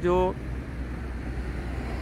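Steady low rumble of street traffic, after a single spoken word at the start.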